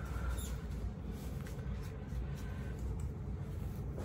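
Quiet room tone: a steady low hum with faint rustling and a few small clicks.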